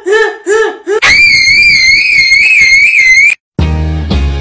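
A high-pitched voice gives a string of short rising-and-falling notes, then a long wavering shriek of about two seconds that cuts off abruptly. Rock music with drums starts near the end.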